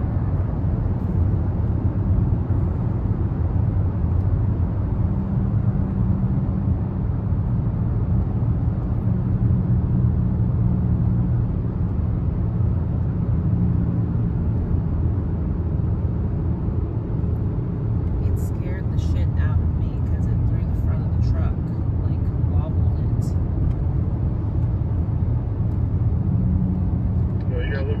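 Steady low rumble of a car driving through a road tunnel, heard from inside the cabin: tyre and engine noise at a constant cruising speed. A few brief light clicks come in the second half.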